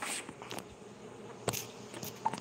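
Handling noise from a phone being moved by hand: a brief rustle at the start, then a sharp click about one and a half seconds in.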